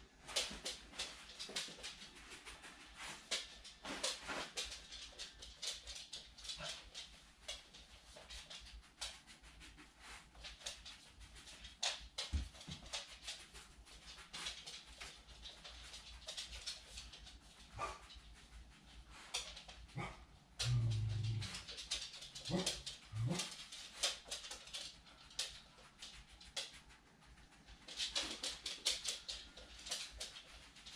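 A dog searching around a room with a wooden floor, with many short clicks, sniffs and rustles, and one heavier low thump about twenty seconds in.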